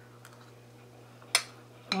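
A metal fork clinks once, sharply, against a plate about a second and a half in, over a low steady hum.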